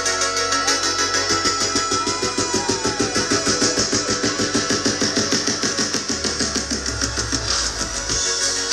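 Live band playing electronic dance music through a festival PA, with drum kit and synthesizers keeping a steady quick beat under held synth chords. The bass line drops lower about six seconds in.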